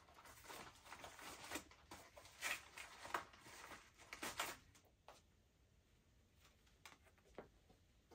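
Faint rustling and scraping of a flat black package being worked open by hand, in short bursts through the first half, then near quiet with a couple of light clicks.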